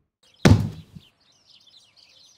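One sharp thud about half a second in, dying away over half a second: an edited transition hit. Faint high chirping, like birdsong, follows.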